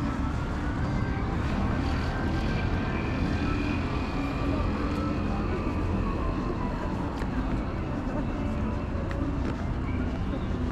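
Busy city street at a crosswalk: a steady low rumble of traffic, with the voices of passing pedestrians.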